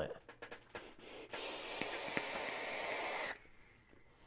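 Long draw on a box-mod vape with the atomizer coil firing: a steady airy hiss and sizzle lasting about two seconds, with a couple of faint pops, that cuts off suddenly. A few small clicks come before it.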